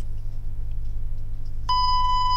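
A steady low electrical hum. Near the end a single electronic beep starts, one clear high tone held for about a second: a time-check beep.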